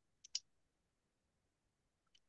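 Near silence broken by two short, faint clicks close together about a third of a second in.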